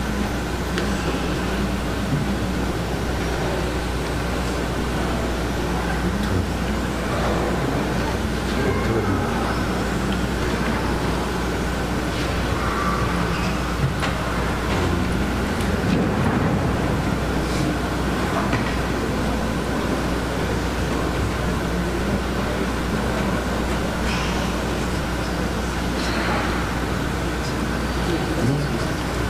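Steady background noise with a constant low electrical hum, faint indistinct voices and a few soft clicks.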